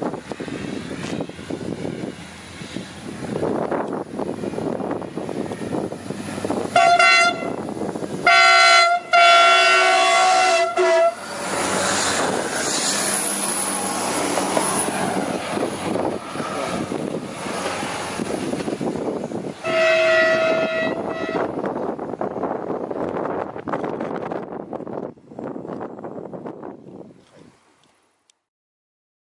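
Passenger train passing close by on the rails, sounding its horn: three blasts in quick succession about seven seconds in, the third one longer, and another blast about twenty seconds in. The running noise fades near the end as the train moves away.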